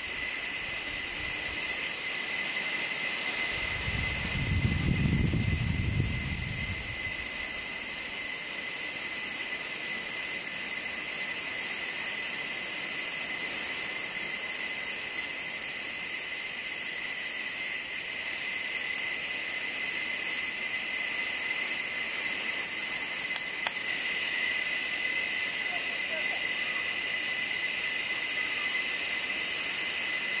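Steady insect chorus: a high shrill hiss with a constant thin whine under it, and a brief pulsed trill partway through. A low rumble rises and fades a few seconds in.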